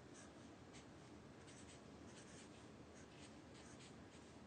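Faint scratching of a felt-tip marker writing letters on a white surface, in short irregular strokes over a low hiss.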